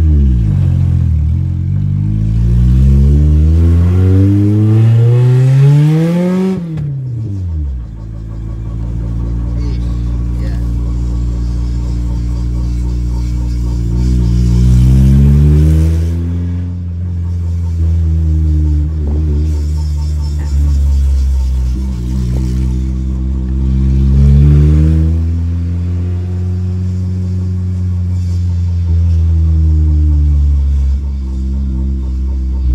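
Acura Integra's B20B four-cylinder engine, heard from inside the cabin while driving: the revs climb steadily for about six seconds, drop sharply at a shift, then settle into a steady cruise with a few shorter pulls. The headers are cracked.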